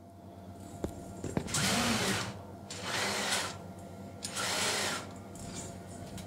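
Belt-linked table-lift mechanism of a homemade laser cutter being run, with its belt and bearings whirring in three short runs, each under a second, after a few light clicks.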